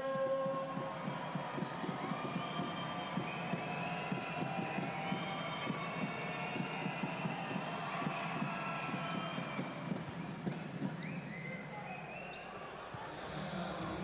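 Basketball bouncing on a hardwood court, repeated thuds during free throws, over the murmur of an arena crowd.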